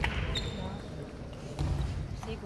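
Table tennis ball struck back and forth in a rally, with sharp clicks of the ball off rackets and table, over a background of voices.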